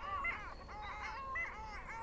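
Domestic waterfowl calling in quick runs of short, arched calls, a few in each run with brief gaps between.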